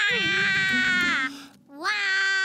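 A felt cartoon boy's high, frightened wail held for about a second, falling off at the end. A second long cry rises and holds near the end.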